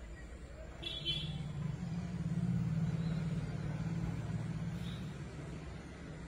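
A vehicle's low engine hum swelling from about a second in and fading out near the end, as it passes by.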